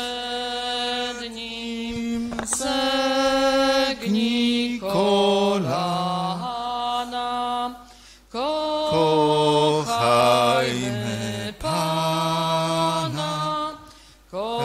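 A church hymn sung in slow, sustained phrases of a few seconds each, with short breaks between them.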